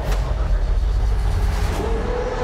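Deep, steady bass rumble of trailer sound design, opening with a sharp hit; a held tone comes in near the end.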